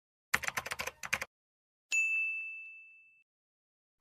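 Intro sound effect: a quick run of typing clicks, then a single bell ding that rings out and fades over about a second.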